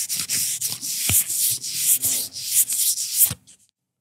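A paper napkin rubbed over a mouth right against the microphone: rubbing in repeated strokes, several a second, that stops about three and a half seconds in.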